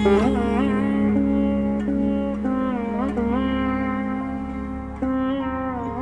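Sitar playing a slow melodic phrase, its notes sliding and bending in pitch, over a steady low drone.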